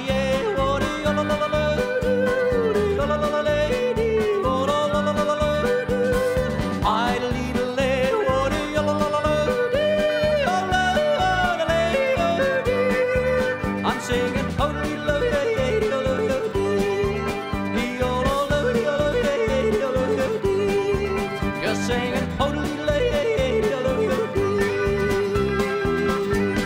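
A man yodelling in a country song, with a country band backing him. Near the end he holds one long wavering note.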